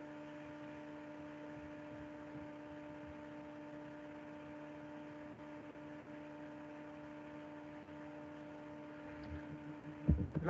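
Faint, steady electrical hum made of a few constant tones over a low hiss: mains-type hum carried in the recording's audio.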